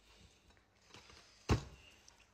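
A single sharp thump about one and a half seconds in, amid faint handling sounds.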